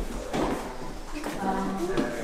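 Indistinct voices with no clear words, fairly quiet, with a few short voiced sounds in the second half.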